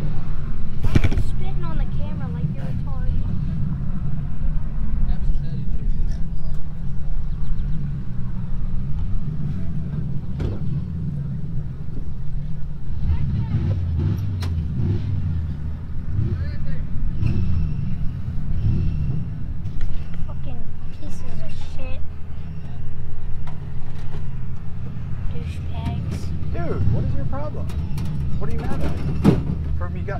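Motor vehicle engines running nearby as a steady low rumble, with distant voices and a few sharp knocks.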